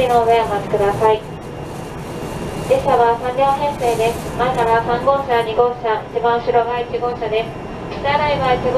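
A voice speaking, in two stretches with a pause of about a second and a half, over the steady low running rumble of a train in motion, heard from inside the passenger car.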